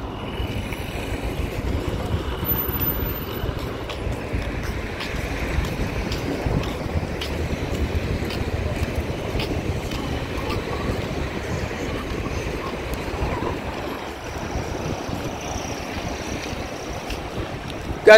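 Steady wind rushing on the microphone, mixed with road traffic passing along an asphalt road.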